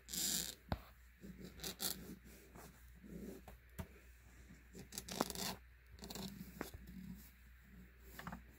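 Iron being run along a pillowcase's French seam: faint, intermittent scraping and rustling as the soleplate slides over the cotton fabric and the bumpy seam, with a few light clicks.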